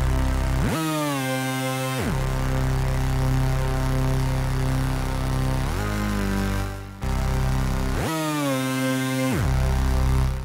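Supersaw synth lead from the Sektor soft synth playing a dark C minor melody by itself, holding long low notes and sliding between notes with portamento, with rising and falling pitch glides about a second in and again in the second half.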